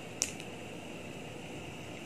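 Steady background hiss of room noise with a faint steady whine, and one brief soft tick just after the start.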